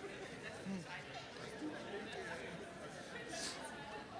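Faint, overlapping chatter of a congregation greeting their neighbours, many voices talking at once in a large hall.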